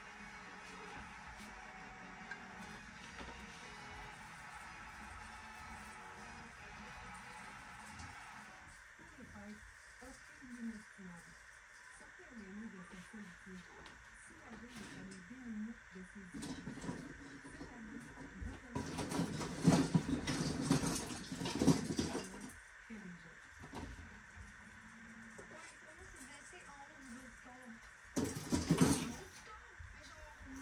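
A television hockey broadcast playing in the room: faint commentary and music. Two louder bursts of noise stand out, one about two-thirds of the way in and a shorter one near the end.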